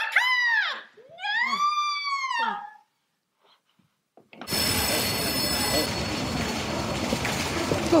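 Two long, high cries, a short one and then a longer one, each rising and then falling in pitch. After a pause, a steady hissing noise bed starts suddenly about halfway through, with thin high tones over it for the first second or so.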